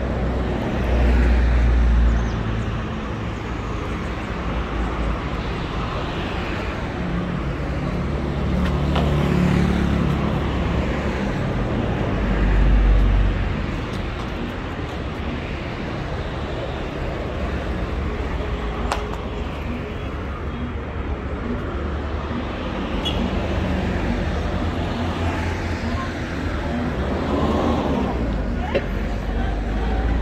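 City street traffic on the road beside the sidewalk: a steady wash of car noise that swells a few times as vehicles pass.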